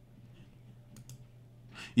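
A few faint computer mouse clicks over a low steady hum, as a question is selected in the webinar control panel, followed by a short intake of breath near the end.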